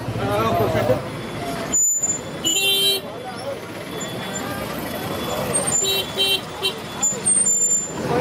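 Vehicle horn tooting over street noise and voices: one toot about two and a half seconds in, then two or three short toots around six seconds.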